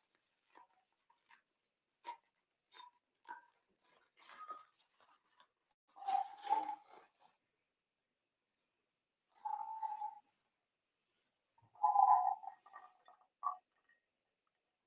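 Faint, scattered handling sounds of a small resealable plastic packet of dried juniper berries being opened: light clicks and rustles, then a few short pitched sounds. Near the end, a quick cluster of small knocks as the berries are dropped into a balloon gin glass.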